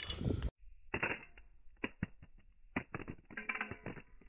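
Motorola Razr V3M flip phone clattering on asphalt as it lands. The clatter cuts off about half a second in, followed by a slowed-down replay of the landing: scattered dull, muffled knocks.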